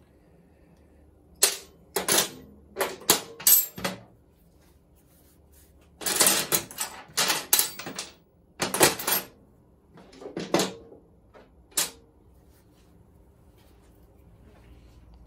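Small metal motorcycle parts and hand tools clinking and clattering as they are handled and set down on a workbench, in several short bursts of clicks with pauses between.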